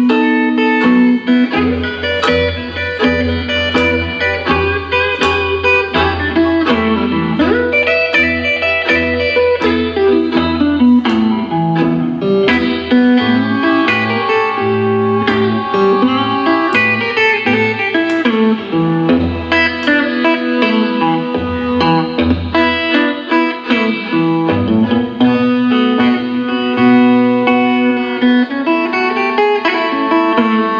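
Live blues band playing an instrumental passage: electric guitar and violin, with sliding notes, over a walking bass line and drums.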